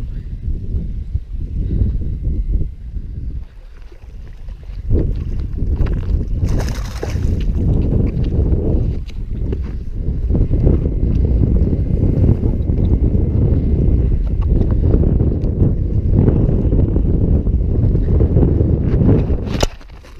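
Wind buffeting the microphone as a heavy, low rumble, easing briefly a few seconds in, with a few knocks from handling.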